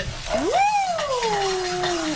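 A drawn-out, high-pitched 'woo!' that swoops up and then slides slowly down, shouted as gin flares up in a frying pan of shrimp. Under it is the hiss and sizzle of the flambé.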